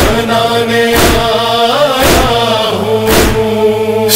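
Wordless chorus of voices chanting held notes behind a noha, between verses. It is marked by a heavy thump about once a second, the steady beat of matam (chest-beating) that keeps time in a noha.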